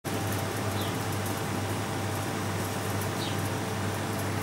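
Steady background hum and hiss, with two faint, brief high chirps, one about a second in and one near the end.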